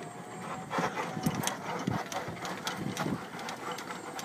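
Golf buggy being driven over a grass fairway: a steady running noise with irregular clicks, rattles and a few low thumps as it rides over the bumps.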